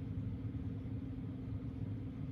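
A steady low hum of room background noise, unchanging throughout, with no speech.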